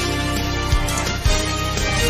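Theme music of a TV news ident, with held notes over a beat of heavy low drum hits.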